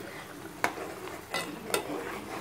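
A spoon stirring sambal chili paste as it sizzles in a frying pan, with three sharp knocks of the spoon against the pan.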